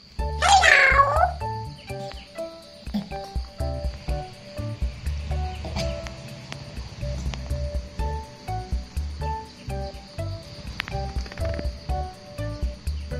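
A monkey's high-pitched, wavering squeal lasting about a second, loud, near the start. After it comes background music of short plucked notes over a low beat.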